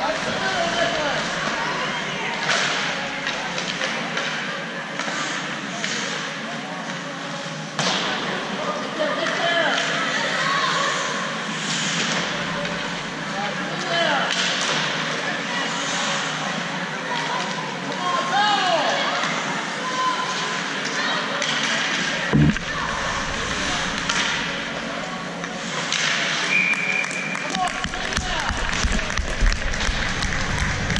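Ice hockey rink during play: scattered clacks of sticks and puck, with shouts from players and spectators echoing in the arena. A single loud thud comes about three-quarters of the way through.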